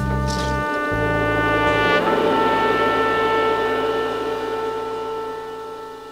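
Spiritual jazz ensemble holding a long closing chord: horns sustain notes over a low drone, one of the upper notes shifting about two seconds in, and the chord fading out as the track ends.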